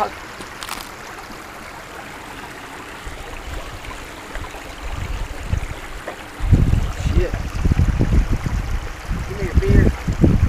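Small mountain creek trickling steadily. From about six seconds in, a heavy, uneven low rumble on the microphone covers the water sound.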